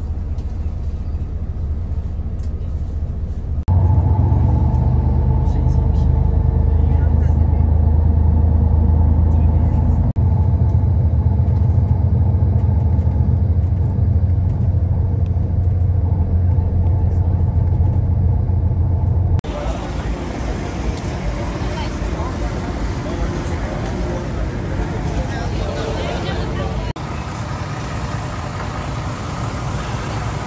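Steady low engine and road rumble of a coach bus, changing abruptly several times. In the last third it gives way to a noisier mix with voices.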